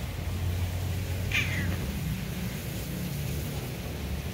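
A cat gives one short, high mew that falls in pitch, about a second in, over a low steady rumble.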